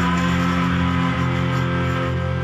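Shoegaze rock band playing live: noisy electric guitars holding steady layered chords at an even, loud level.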